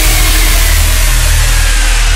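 Electronic dance music in a dubstep style: a sustained, distorted low bass synth under a wash of white noise, with no drum hits.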